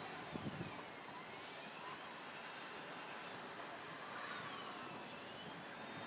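Steady background hum from a distant motor, with a faint high whine that slowly wavers down and up in pitch.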